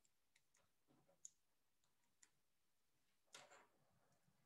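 Near silence: room tone with a few faint, brief clicks and a short soft hiss near the end.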